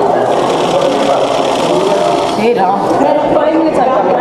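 Many people talking at once in a hall: a steady murmur of overlapping voices.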